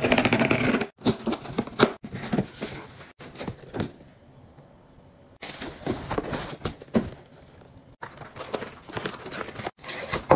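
Cardboard packaging being opened and handled by hand: a quick rip of packing tape being pulled off a shipping box, then cardboard scraping, rustling and knocking in short irregular bursts that cut off suddenly.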